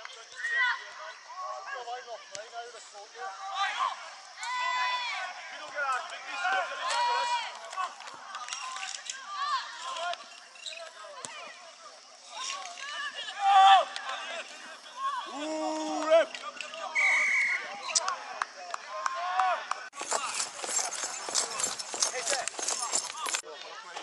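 Shouts and calls from rugby players and sideline spectators during open play, overlapping and uneven. Near the end there is a loud rushing noise.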